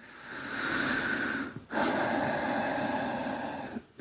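A person breathing deeply and audibly close to the microphone: two long breaths, the second longer than the first.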